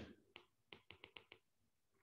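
Faint clicks of a stylus tip tapping a tablet screen during handwriting, about six quick ticks in the first second and a half, then near silence.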